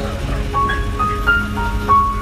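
Instrumental music from live stage accompaniment: a short melody of held notes stepping up and down in pitch over a steady low drone.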